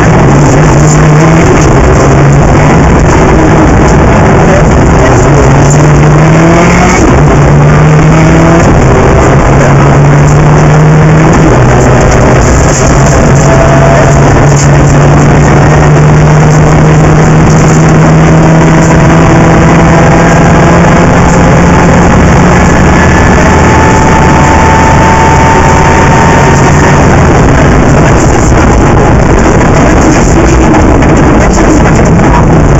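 Rally car engine under hard acceleration, its pitch climbing and dropping back several times in the first ten seconds or so as it goes up through the gears, then held at a steadier pitch for a while before easing off. The recording is very loud, close to overloading.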